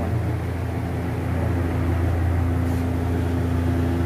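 Steady, loud low hum of running workshop machinery, with a faint steady tone above it that stops shortly after the end.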